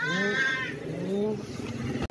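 A domestic cat meowing twice: one long meow, then a shorter, rising one about a second in.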